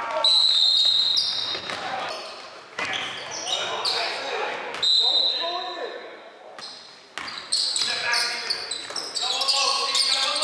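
Basketball being dribbled on a hardwood gym floor, with sneakers giving two long high squeaks and players and spectators calling out, echoing in the large gym.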